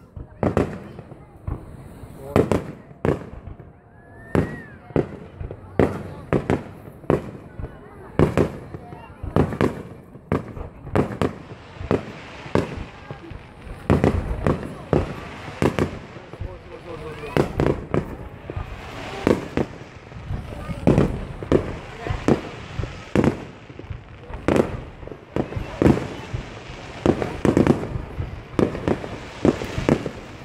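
Aerial firework shells bursting in a display, a long series of sharp booms. Spaced out at first, the bursts come thick and fast from about twelve seconds in.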